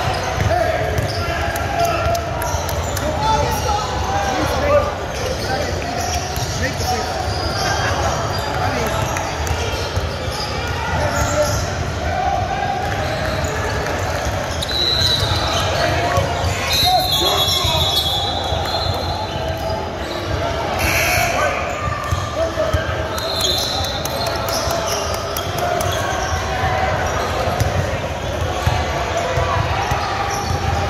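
Basketball bouncing and dribbling on a hardwood gym floor, with sneakers squeaking a few times in the second half. A steady mix of players' and spectators' voices echoes through the large gym.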